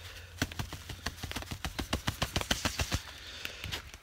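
A quick run of light clicks and crackles, about eight a second for some two and a half seconds, from the ice-crusted hammock tarp being tapped and handled.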